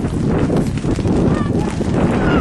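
Wind buffeting an outdoor camera microphone, with a couple of short high calls in the middle.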